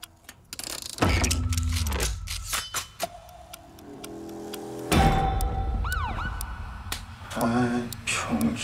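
Film-trailer sound design: two heavy low booms about four seconds apart, each trailing off in a rumble. A short siren-like whoop follows the second boom.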